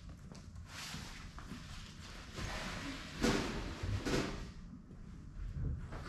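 Cardboard box holding a telescopic ladder being handled and slid into an aluminium ute canopy: a few soft knocks and scrapes, the clearer ones about three and four seconds in, with some shuffling footsteps.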